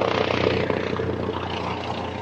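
Helicopter rotor sound, a rapid chopping over a steady engine tone, loudest at the start and gradually fading.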